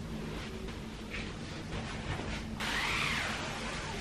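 Faint rustling of clothes being handled and moved about. A louder stretch of rustling starts about two and a half seconds in and lasts just over a second.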